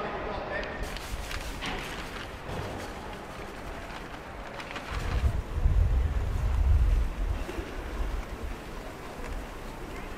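Wind buffeting the microphone outdoors: a noisy rush with a loud low rumble between about five and seven and a half seconds in.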